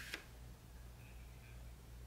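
Quiet room tone with a steady low hum and one faint click right at the start.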